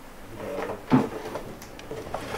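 A single knock about a second in, over faint room sound in a small space.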